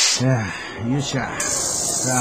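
Air hissing into a bicycle tyre: a short burst, another brief one about a second in, then a steady hiss, with brief rising-and-falling vocal sounds over it. The tyre has a newly replaced valve core, so it holds the air.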